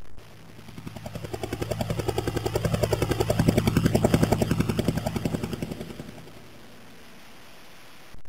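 Helicopter sound effect: rotor blades chopping in a fast, even beat, growing louder to a peak about halfway through, then fading away.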